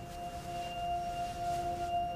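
Background music: a few soft, held tones that slowly grow louder.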